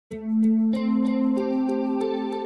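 Ambient background music: sustained, effects-laden notes that start at once and build as further notes join, over a light tick about three times a second.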